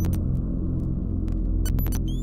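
Electronic intro sound effect for a glitching logo: a deep, steady electronic hum with many overtones, broken by scattered sharp digital clicks, with a cluster of clicks near the end.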